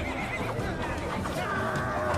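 Horses neighing in a battle-charge soundtrack, with music underneath; a held pitched line sets in about one and a half seconds in.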